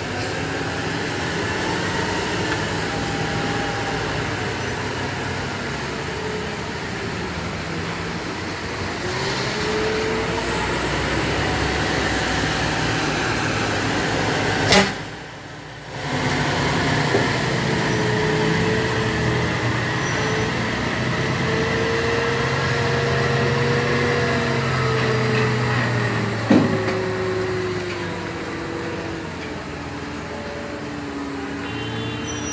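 Volvo heavy truck's diesel engine working under load, its pitch rising and falling as it hauls a long flatbed semi-trailer around a tight hairpin bend. A sharp click and a short dropout come about halfway, and another sharp click comes near the end.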